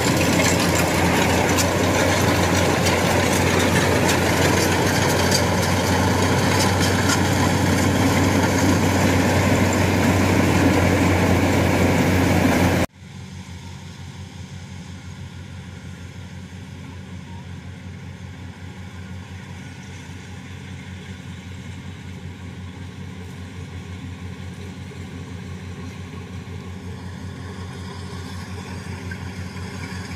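Kubota DC-95 rice combine harvester running under load while cutting, close by: a loud, steady diesel drone of engine and threshing machinery. About 13 seconds in the sound drops abruptly to the quieter, more distant drone of a Kubota DC-70 combine harvester, which grows slowly louder as it approaches.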